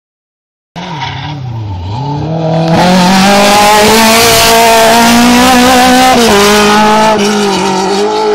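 Rally car's engine at full throttle on a hillclimb, starting about a second in: the revs dip as it brakes for the bend, then climb and hold high as it passes close by, with tyres squealing. The pitch drops sharply about six seconds in at a gearshift, then climbs again.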